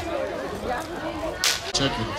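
Voices talking at a gathering, with one sharp crack about one and a half seconds in that is the loudest sound.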